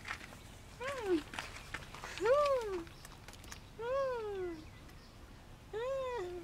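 Baby macaque crying softly: four plaintive calls, each rising and then falling in pitch, about one every second and a half.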